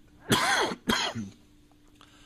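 A man clearing his throat twice: a longer voiced rasp that rises and falls in pitch about a third of a second in, then a shorter, sharper one about a second in.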